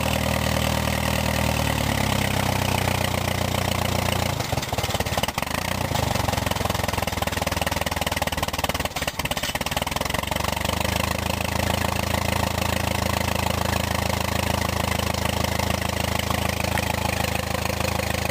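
Case farm tractor engine running at idle just after starting; the beat wavers for a couple of seconds about four seconds in and dips briefly around nine seconds, then settles into a steady idle.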